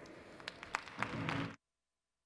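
Audience applause with scattered sharp claps, growing louder about a second in, then cutting off suddenly to silence.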